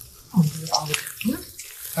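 Olive oil and chicken skin frying in a hot pot, a steady crackling sizzle as the skin renders its fat. A voice makes two short sounds over it.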